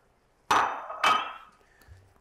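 Two sharp clanks of kitchenware about half a second apart, each with a short ringing tail.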